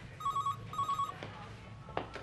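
Telephone ringing with the British double ring: two short warbling trills in quick succession, followed near the end by a click.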